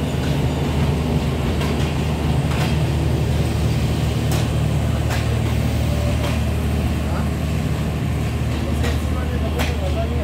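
Passenger train coaches rolling past at low speed: a steady low rumble and hum, with scattered sharp clicks from the wheels over the rail joints.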